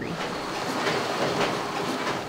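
K-Cup packaging line running: conveyor and machinery making a steady clattering rattle.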